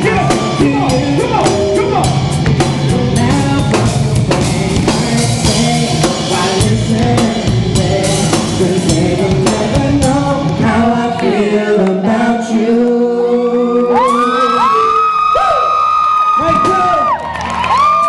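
A song with singing over a drum beat. About ten seconds in the drums drop out, leaving held, gliding vocal lines to close.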